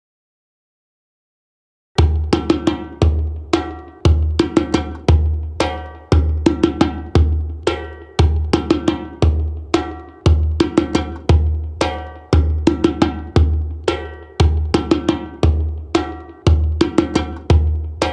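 Djembe played by hand in a repeating rhythm: deep bass strokes about once a second, with sharp, ringing higher strokes between them. It starts about two seconds in, after silence.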